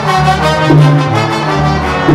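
Salsa music: a trombone section plays a sustained phrase over a walking bass line.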